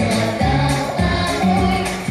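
A young girl singing a pop song into a microphone over a recorded backing track with a bass line, holding long notes.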